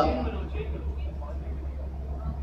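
A pause in amplified speech: a steady low hum, with faint voices in the background.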